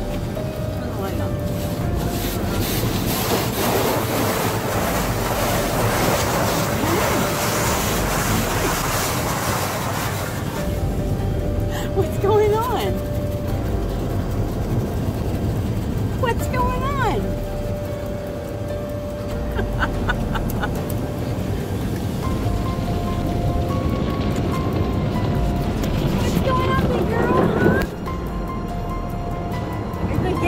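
Car wash water spray hissing against a truck's windows and body, heard from inside the cab; it is heavy for about the first ten seconds and then eases. A dog whines in short rising-and-falling cries about three times.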